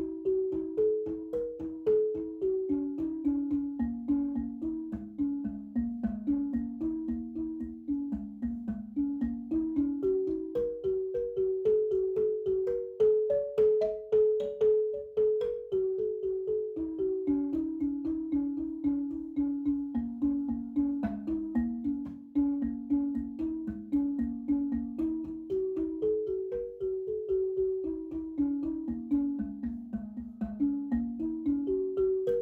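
Background marimba music: a melody of struck notes winding down and back up, over a low steady pulse.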